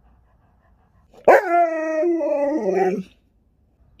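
A husky-malamute gives one 'talking' howl lasting nearly two seconds. It starts sharply about a second in, holds a steady pitch, then drops lower just before it ends.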